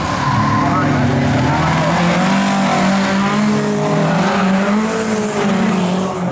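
Folk-racing (jokkis) car's engine revving on a gravel track, its note rising and falling throughout, with a rush of gravel and tyre noise in the middle seconds.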